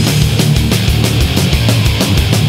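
Goregrind: heavily distorted, thick low guitars and bass over fast drumming, with rapid drum and cymbal hits about seven a second.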